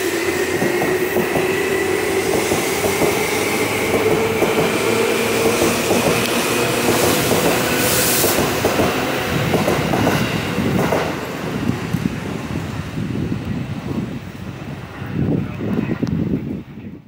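Seibu electric train's motor whine rising slowly in pitch as the train gathers speed. In the second half another train rolls in along the platform with a rumble of wheels on rail joints, loudest near the end.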